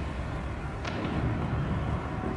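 A low, steady rumbling ambience, with a short faint swish just under a second in.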